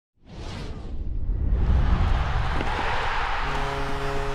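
Intro music and sound effects for an animated logo: swelling whooshes over a low rumble, building into a held chord about three and a half seconds in.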